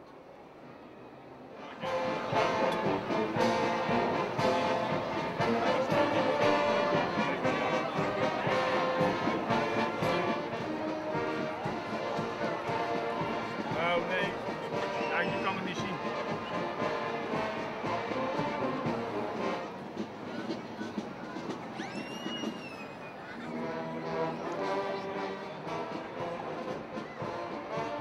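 Brass band music with held notes, starting abruptly about two seconds in, with voices underneath.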